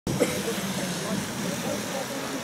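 Street ambience: a car engine running steadily, with voices talking in the background.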